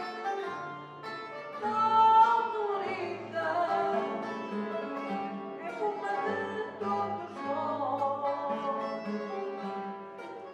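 A woman singing fado with long, wavering held notes, accompanied by a Portuguese guitar and a classical guitar.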